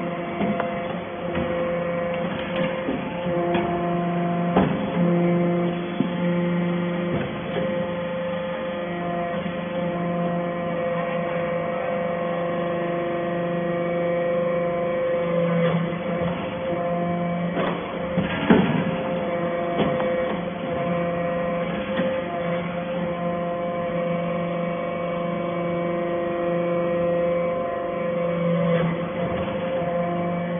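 Hydraulic briquetting press for casting chips running: a steady hum from its hydraulic power unit, with tones that swell and fade every several seconds through the pressing cycle, and a few sharp metallic knocks, the loudest about 18 seconds in.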